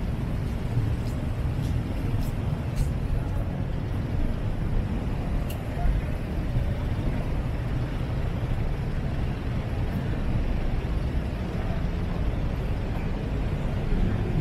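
Steady city traffic noise: an even rumble of cars passing on the road beside the pavement.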